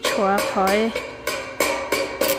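A singing voice carrying a gliding, drawn-out melody, with several sharp knocks or clicks scattered through it.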